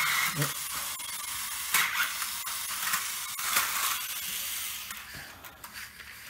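Battery-powered toy bullet train running on plastic coaster track: its small electric motor whirs and the plastic rattles, with a couple of sharp clicks. The sound grows quieter after about five seconds.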